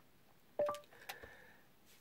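A short single-pitched beep about half a second in, the Google Assistant listening tone through the Chevy Bolt's car speakers after the steering-wheel voice button is pressed and held. A faint click follows.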